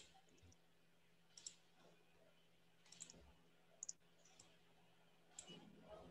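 Near silence with a handful of faint, short clicks scattered every second or so.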